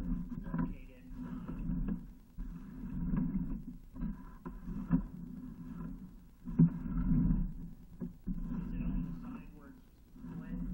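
Indistinct, muffled talking that breaks into short stretches, with a few sharp knocks.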